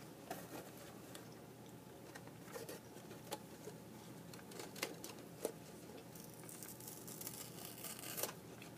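Fingers handling a cardboard chocolate box: scattered soft taps and clicks on the cardboard, then a crinkling rustle of paper in the last second or so.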